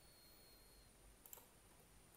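Near silence: room tone, with one faint computer mouse click a little over a second in.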